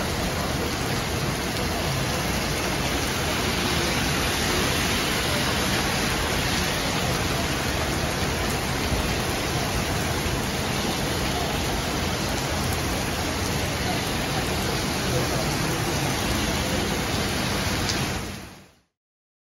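Heavy tropical rain pouring steadily onto a wet road and pavement, a dense, unbroken hiss.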